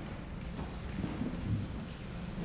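Low, steady rumble of room noise in a lecture hall, with no clear event.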